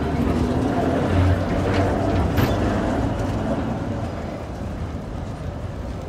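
Vintage A1-class electric tram rolling past on street rails, a low rumble of motors and wheels that swells and then fades as it moves away. A couple of sharp clanks come about two seconds in.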